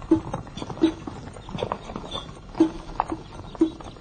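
Hoofbeats of ridden animals walking: a series of separate clops, a little under one a second.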